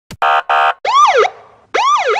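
Electronic police-style siren effect: two short buzzing blasts, then two quick whoops that each sweep up and back down in pitch.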